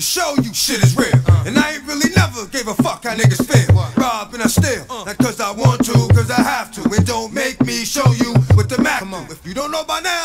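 Hip hop track playing through a live DJ mix: a rapped vocal over a beat with a repeating heavy bass line.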